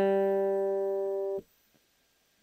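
A single note plucked on an acoustic guitar, the open G string sounding G, the minor third of an E minor chord. It rings with a slow fade and is damped abruptly about a second and a half in.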